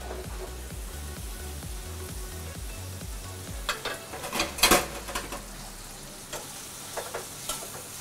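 Freshly drained pasta sizzling in a frying pan of hot fried lard and guanciale. About four to five seconds in, a few sharp knocks of utensils against the pans.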